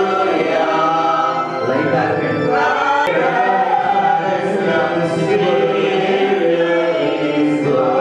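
A congregation singing a hymn together, many voices on long held notes.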